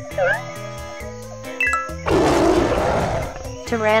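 A growling dinosaur roar sound effect lasting about a second, starting about halfway through, over steady children's background music. A short falling sound effect plays near the start.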